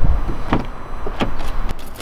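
A Volkswagen Golf R Estate's driver's door being opened as someone gets into the seat: a thump at the start, then a few sharp clicks about half a second apart.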